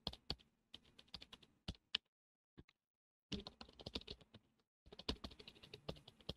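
Computer keyboard typing: scattered key clicks, a pause of about a second, then two quick bursts of typing.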